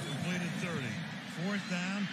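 Speech only: a man talking quietly, with no other sound standing out.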